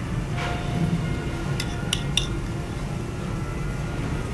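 A metal spoon clinking against dishes as cream sauce is spooned over sliced potatoes in a pan: a few light clinks, three of them close together in the middle, over a steady low hum.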